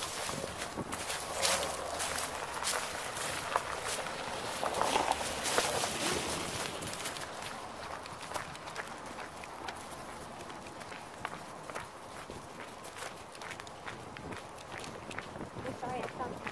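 Footsteps crunching on gravel, people and small dogs walking together, a quick run of crisp steps that is denser and louder in the first half and thins out toward the end.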